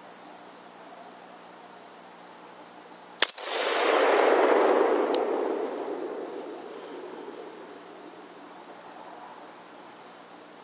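A single 6.5 Grendel rifle shot, a sharp crack about three seconds in. A rush of noise follows at once, swells for about a second and fades away over the next few seconds. A steady high insect chorus runs underneath.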